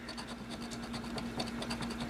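A large coin scraping the coating off a scratch-off lottery ticket: soft, rapid, repeated scratching strokes on the card.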